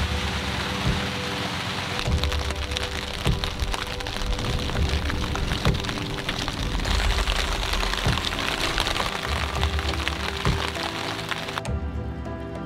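Steady rain hiss and patter with many fine drop clicks, over background music. The rain cuts off suddenly near the end.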